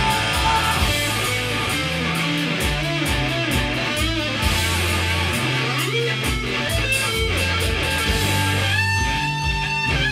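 Instrumental passage of a rock song played live: electric guitar over a bass and drum backing. Near the end a held guitar note wavers in pitch.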